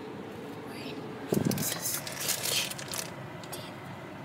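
Handling noise inside a car cabin: a knock about a second in, then rustling of paper, over the steady hum of the idling car.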